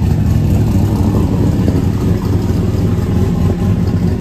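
Pickup truck engine idling close by: a loud, steady low rumble.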